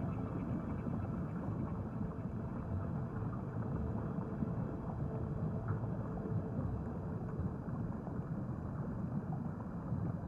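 Low, steady underwater rumble of moving water.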